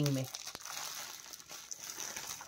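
Clear plastic packaging of a folded suit-fabric set crinkling quietly as it is handled, with a small click about half a second in.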